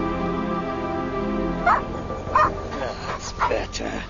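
Background music fades out and a dog barks several times in short, sharp barks, starting a little under two seconds in.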